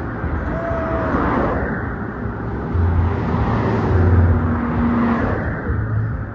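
Cars in a slow convoy driving past, with steady engine and road noise and low rumbles that swell twice in the middle. A short falling whistle is heard about half a second in.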